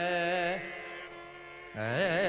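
Male Carnatic vocalist holding a long sung note that ends about a third of the way in. The sound drops to quieter accompaniment for about a second, then he starts a new phrase near the end with a wavering, ornamented pitch (gamaka).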